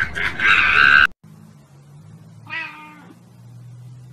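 Cats meowing: a loud, high, drawn-out cry that cuts off abruptly about a second in, then after a quiet pause one short meow.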